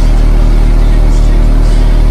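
Two American Bass Elite 15-inch car-audio subwoofers playing one loud, steady deep bass tone at high power, the cones moving hard.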